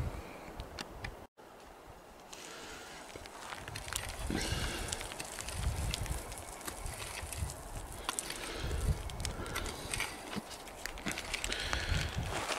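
Irregular knocks, scrapes and thumps of a pick digging into rocky, gravelly soil, over a steady background hiss.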